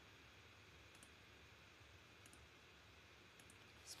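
Near silence: faint room tone with a few soft, separate clicks of a computer mouse.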